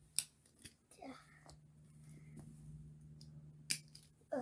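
Plastic clicks from a toy doll seat's harness buckle and straps being fastened: two sharp clicks, one just after the start and one near the end, with softer handling ticks between.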